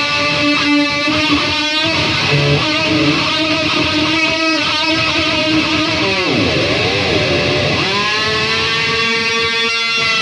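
Distorted electric guitar playing quick lead phrases. About six seconds in, the tremolo bar drops the pitch and brings it back up twice, then a note swoops up and is held to the end.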